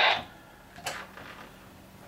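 A single short click about a second in, from the push-to-talk bar on an Astatic D-104 desk microphone being pressed to key a handheld radio. Otherwise quiet room tone.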